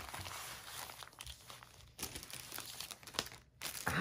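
Thin clear plastic bag crinkling and rustling in irregular handfuls as it is handled, with a few light clicks.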